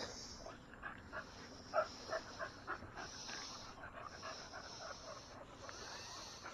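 Faint dog panting, quick short breaths about three a second, with a faint high-pitched buzz coming and going in the background.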